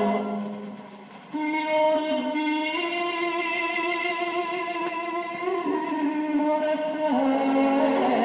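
Vinyl playback of an Italian popular song from the 1950s: a passage with no lyrics, a slow melody in long held notes over the accompaniment, after a brief drop in level about a second in.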